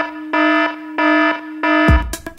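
Electronic dance music in a break: the drums drop out and a buzzing, alarm-like synth tone repeats in short pulses, a little under two a second. The beat kicks back in near the end.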